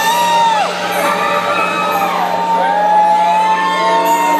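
Live rock band playing, with long, high held notes that slide up into pitch and fall away at the end, over a steady band backing.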